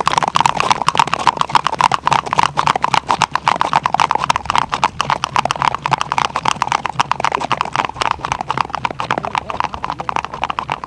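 Hooves of two Icelandic horses striking bare ice at the tölt: a rapid, even clatter of sharp hoof clicks.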